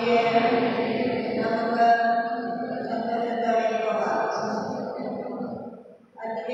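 A woman chanting a liturgical text into a church microphone on long held notes. The phrase fades out just at the end before the chant resumes.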